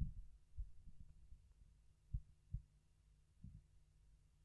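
Near silence with a few faint, short low thumps from handling of a wired handheld microphone.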